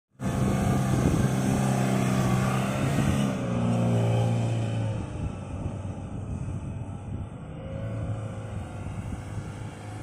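Mahindra Scorpio Getaway pickup's engine running under hard load as the truck ploughs through soft sand. It is loud and steady for about the first five seconds, then fades as the truck pulls away, swelling briefly again about eight seconds in.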